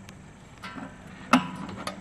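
A large wrench breaking loose a threaded brass fitting on a steel water heater tank: a faint squeak, then a sharp metallic crack past the middle and a lighter click near the end.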